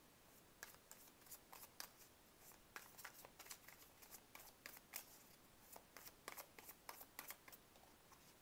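A deck of tarot cards shuffled by hand, faint and irregular soft clicks as the cards slide and tap against each other.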